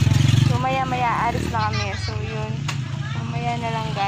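A vehicle engine running close by, loud for the first half second and then dropping back to a lower steady rumble, under people talking.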